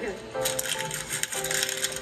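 Plastic candy wrapper crinkling as a candy is unwrapped, starting about half a second in, over background music.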